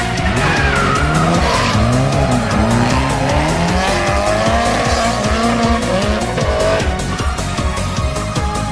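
Two Nissan Silvia drift cars sliding in tandem, engines revving up and down and tyres squealing, over background music with a steady beat.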